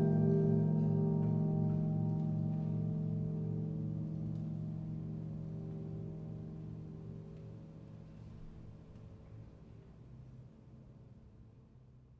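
The closing chord of a chamber-orchestra opera score, held on vibraphone, piano and keyboard, rings on as one sustained chord and fades away slowly and evenly until it has nearly died out by the end.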